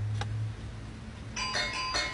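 An electronic doorbell-style chime starts about a second and a half in and rings on with several steady tones, set off as a cat paws at a small wooden box.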